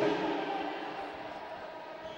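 A steady hum in several tones over faint sports-hall background noise, slowly fading.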